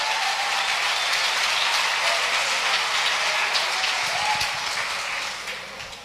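Congregation applauding steadily, dying away over the last second or so.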